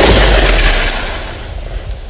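Closing hit of a riddim dubstep track: one loud booming impact at the start, with deep sub-bass and a wide noisy tail that fades slowly away.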